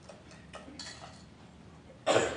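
Faint, scattered light clicks and clinks, about half a dozen in two seconds, from communion trays being handled and passed along the pews in a hushed congregation.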